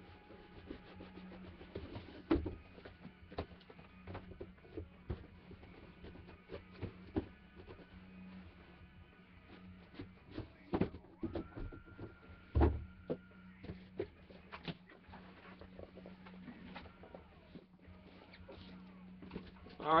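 Faint scattered clicks and knocks of objects being handled and set down, over a steady low hum, with a faint steady tone for a couple of seconds near the middle.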